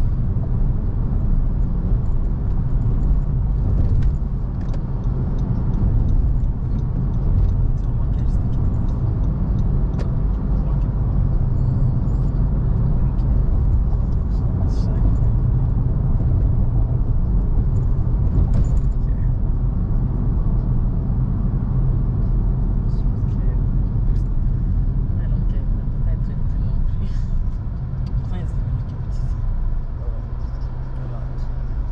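Road and engine noise of a car driving in traffic, heard from inside the cabin: a steady low rumble with scattered faint ticks.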